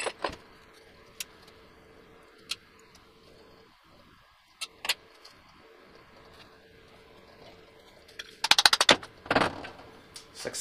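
Small metal parts and tools clinking on a workbench as screws are taken out of a belt pulley: scattered single clicks, then a quick run of about a dozen clicks near the end followed by another clatter.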